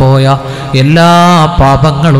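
A man's voice chanting a prayer in two long, drawn-out phrases, held on sustained notes and amplified through a microphone.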